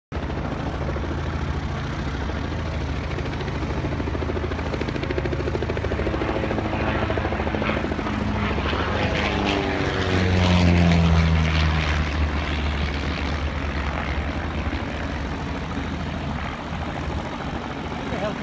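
Pitts Special S2-A aerobatic biplane, its six-cylinder Lycoming engine and propeller at power on a low pass. It grows louder, is loudest about ten seconds in with the pitch dropping as it passes, then fades.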